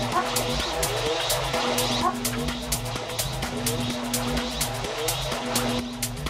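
Tech house track from a DJ mix: a steady electronic beat with hi-hats and a repeating bassline. A synth note is held on and off, and short rising glides come near the start and about two seconds in.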